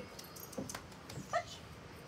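A young dog gives one short, high whimper a little over a second in, amid a few soft footsteps on a wooden deck.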